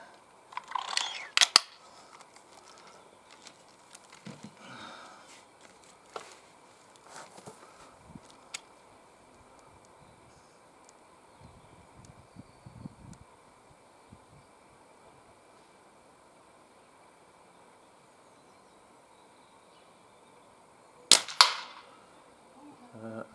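A .22 Diana Mauser K98 underlever spring-piston air rifle fires once near the end: a sharp report followed about a third of a second later by a second crack as the pellet strikes downrange. About a second in there are a few sharp clicks.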